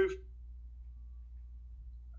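A man's voice trails off at the very start, then only a faint, steady low hum of room tone remains.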